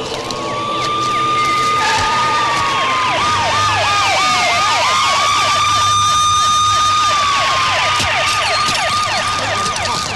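Several police jeep sirens sounding at once. One wails, rising and holding a long note before falling away, while another yelps in rapid up-and-down sweeps of about four a second.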